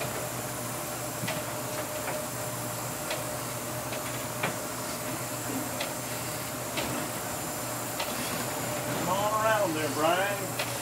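Steady engine drone inside a pilot boat's wheelhouse, with a thin steady whine over it and scattered sharp ticks of spray striking the windows. A short drawn-out voice rises and falls near the end.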